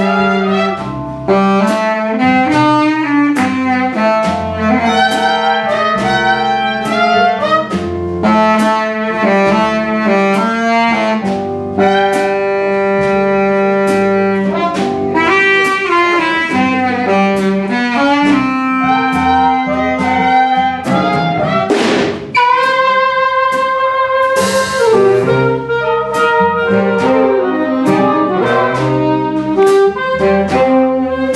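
Jazz big band, saxophones and brass over a rhythm section, playing a tune in rehearsal, with sustained ensemble chords shifting from beat to beat.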